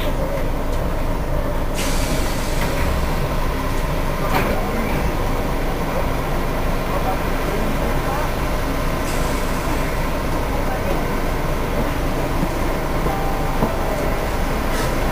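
Inside a Cercanías commuter train rolling slowly along a station platform: a steady low rumble from the train, with a few brief clicks.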